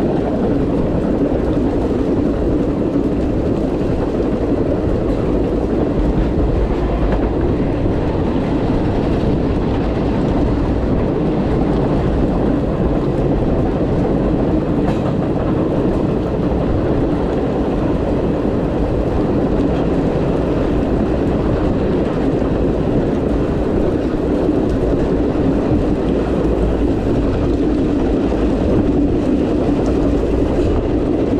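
Steady rumble of a moving passenger train's steel wheels on the rails, picked up from the open rear platform of the last car, a 1928 Pullman private car. It keeps an even level throughout, with no horn or braking.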